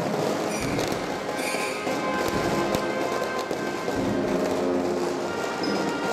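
Guatemalan procession band playing a slow funeral march, brass and woodwinds holding long sustained chords, with a few sharp cracks heard over it.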